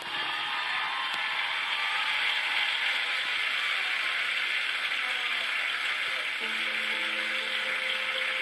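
Studio audience applauding, a dense steady clatter of clapping that starts as the song cuts off and holds at one level, heard through a television's speaker.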